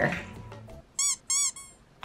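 A spoken phrase ends, then about a second in come two short, high squeaks, each rising and falling in pitch, about a third of a second apart, with a faint fading trace after them.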